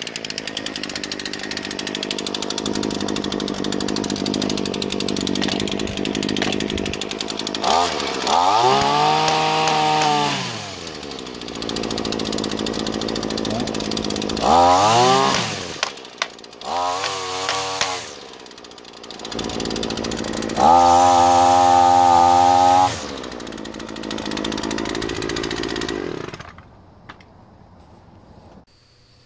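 Shindaiwa T242 string trimmer's 23.9cc two-stroke engine idling and revved up four times, each rev rising and falling back to idle, the last held for about two seconds. The engine is shut off shortly before the end.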